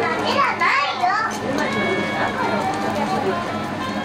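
Background chatter of several people talking at once, with overlapping voices, busiest in the first second or so.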